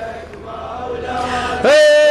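Male reciter chanting a Shia Muharram lament (latmiya), answered by a group of men's voices. A softer stretch where the voices are faint comes after a held note fades. About one and a half seconds in, the reciter comes in loudly on a long held note.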